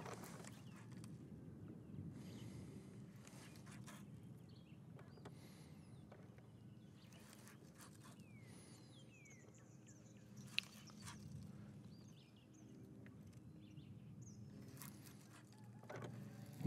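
Near silence: faint outdoor ambience with a few faint high chirps and one small click about ten and a half seconds in.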